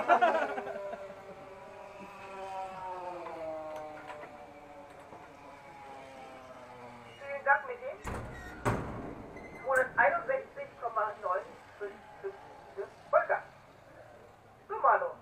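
The 2.5 cc combustion engine of a tethered speed model car running down at the end of its run: a steady whine whose pitch falls slowly as the car slows. About eight seconds in comes a short rush of noise, followed by short bursts of voices.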